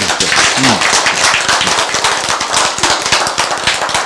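A roomful of people clapping their hands: a dense, steady round of applause.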